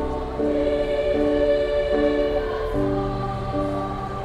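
Elementary-school children's choir singing a song, held notes moving from one to the next.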